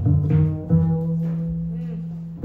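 Upright double bass played pizzicato in a jazz bass solo: a few quick plucked notes, then, just under a second in, one low note held and left ringing as it slowly fades.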